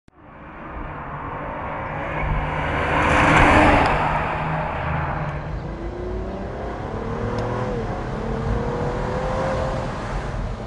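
Restomodded 1948 Cadillac coupe with a Cadillac ATS-V twin-turbo V6 accelerating past, loudest about three and a half seconds in. The engine then pulls hard with its pitch climbing, dips briefly at an upshift, and climbs again.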